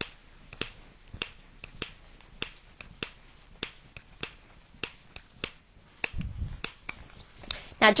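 Metronome clicking steadily at about 100 beats a minute, one sharp click every 0.6 seconds, setting the pace for head turns while walking in a balance test. A short low rumble comes a little after six seconds.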